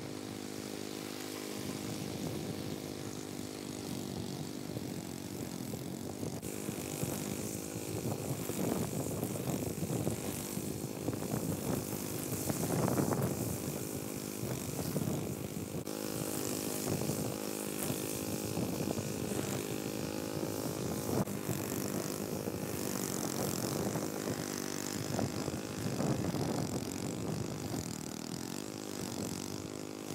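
Gasoline push lawn mower engine running steadily while cutting tall, rough grass, its sound rising and falling as the load changes.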